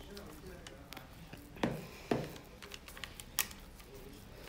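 Metal spoon scooping and spreading wet, flourless zucchini dough from a plastic bowl onto parchment paper: soft scraping with a few light clicks and knocks of the spoon, the clearest about one and a half, two and three and a half seconds in.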